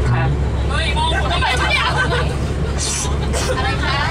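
Mostly talk and passengers' chatter inside a tour bus, over the steady low drone of the bus's engine.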